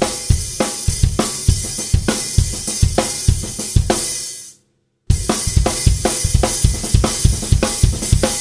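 Drum kit played with sticks: a fast groove of bass drum and accented snare with ghost notes between the accents, under a continuous wash of hi-hat and cymbal. It breaks off briefly about four and a half seconds in, then picks up again.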